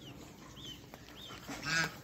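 Ducks calling: a few short, high chirps, then a louder honking call near the end.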